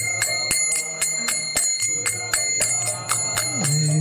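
Small brass hand cymbals (kartals) struck in a steady beat, about three or four strokes a second, each stroke ringing on, over a low held note, in the pause between sung lines of a Vaishnava devotional chant.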